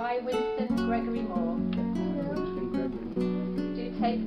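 Acoustic guitar music: single notes plucked one after another in a slow, gentle melody.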